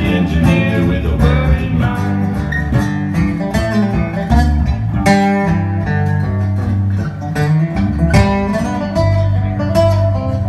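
Live instrumental break: an acoustic guitar picking a country-blues tune over a moving bass line, with no singing.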